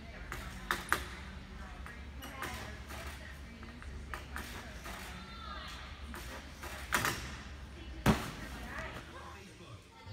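A gymnastics bar knocking and rattling under a gymnast swinging and circling on it, with a few sharp knocks, the loudest two about seven and eight seconds in. Faint voices echo in a large gym hall under a steady low hum.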